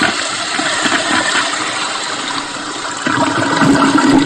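Toilet flushing sound effect: a loud, long rush of water that deepens and swells about three seconds in.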